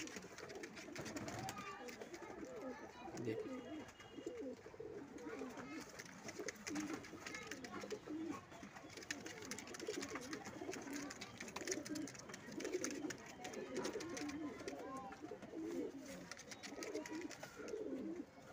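Domestic pigeons cooing, many low, wavering coos overlapping one another.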